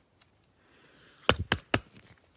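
A faint rustle, then three quick, sharp clicks of a rigid plastic top loader holding a trading card being handled and set down.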